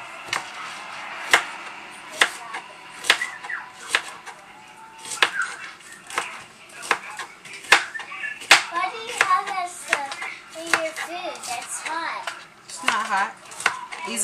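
Kitchen knife chopping a green bell pepper on a cutting board: irregular sharp taps of the blade striking the board. Voices, including a child's, talk in the background.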